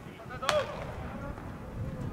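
A single sharp pop about half a second in as a pitched baseball smacks into the catcher's mitt, with a short shout from a player around it, over steady open-air ballpark noise.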